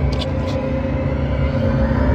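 Horror film soundtrack: a low rumbling drone with held tones, and a few faint clicks near the start.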